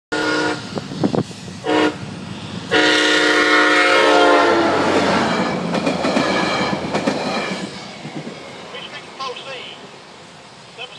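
SunRail commuter train passing at close range, sounding its horn in several blasts, the last one long and dropping in pitch as the locomotive goes by. The rumble and clatter of the bi-level coaches on the rails follow and fade near the end.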